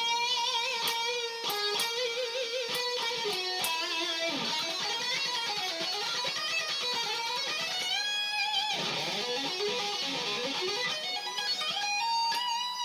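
Distorted electric guitar playing a lead solo: an LTD EC1000 through an Ibanez TS9 overdrive, Boss DD6 delay and a Mesa Boogie Mark V amp. It plays single held notes with wide vibrato, bends and slides, and quicker gliding runs in the middle.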